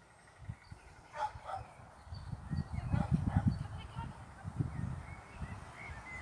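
A dog barking a few times, over low irregular buffeting on the microphone that grows louder about two seconds in.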